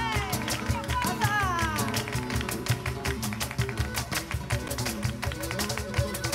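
Live flamenco music: a singer's sliding, ornamented line in the first two seconds over sustained accompaniment, with a fast, steady run of sharp percussive strikes.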